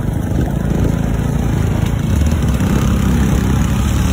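Motorcycle engine running steadily close to the microphone, a low, even throb.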